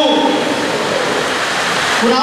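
A steady, loud hiss fills a short pause between a man's words, his voice trailing off in a falling tone just at the start.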